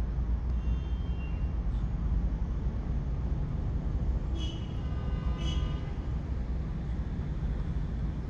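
Steady low rumble of vehicle noise, with faint thin high tones twice: near the start and around the middle.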